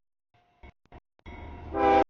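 Diesel locomotive horn of an approaching CSX train, sounding for the grade crossing: it swells and is loudest near the end, then cuts off abruptly. The sound comes and goes in choppy bits.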